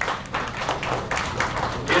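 Scattered applause from a roomful of people: many hands clapping irregularly, welcoming candidates as their country is called.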